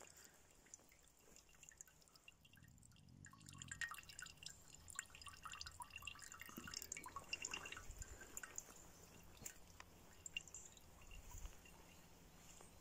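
Faint, irregular drips of water falling from a hanging cloth bag into a metal cooking pot, coming thicker from about four seconds in.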